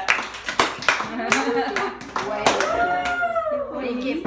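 A few people clapping in uneven claps while voices exclaim over it, with one long rising-and-falling cry about three seconds in.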